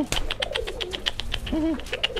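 Domestic pigeons cooing, the courtship cooing of males driving their hens. One short coo rises and falls about one and a half seconds in, over a fast run of high ticks.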